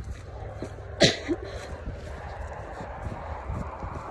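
Footsteps in snow and wind rumble on a phone's microphone while walking, with one short, sharp, sneeze-like burst of breath from a person about a second in.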